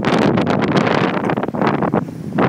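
Loud, steady rush of a mountain stream's flowing water, with wind buffeting the microphone.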